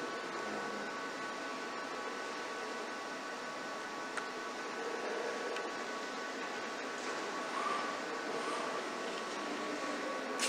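Mitsubishi Electric robot arm and its pallet conveyor cell running: a steady mechanical hum with faint steady whine tones. There is a light click about four seconds in.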